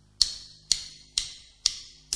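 Count-in clicks at the start of a guitar backing track: sharp, bright ticks at a steady beat of about two a second, four of them, over a faint low held tone.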